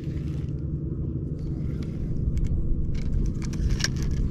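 A steady low rumble with a few short clicks and rattles from a spinning reel and rod being handled, most of them in the second half.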